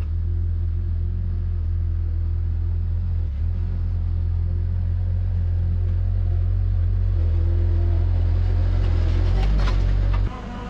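Skid-steer loader's engine running steadily as the machine drives closer carrying a boulder on its forks, a low drone that grows slightly louder. A few sharp knocks come near the end.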